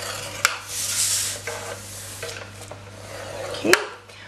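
A metal scoring stylus scraping along a groove of a plastic scoring board, pressing a score line into cardstock, with a sharp click about half a second in and another near the end as the tool and card are handled.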